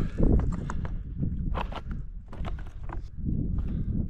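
Hiking boots crunching on loose rock as a hiker walks a stony mountain ridge, in irregular uneven steps. A low rumble of wind on the microphone runs underneath.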